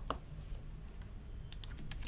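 Computer keyboard keys clicking as a name is typed: a couple of clicks at the start and a quick run of keystrokes near the end, over a low steady hum.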